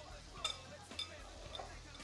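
Two metal forks tossing salad in a glass bowl: about three light clinks of fork on glass, roughly half a second apart, over a quiet background.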